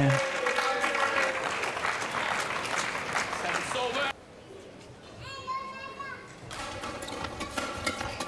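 Arena crowd cheering and clapping after a badminton rally is won. The noise drops off suddenly about four seconds in to quieter hall sound, then builds again near the end.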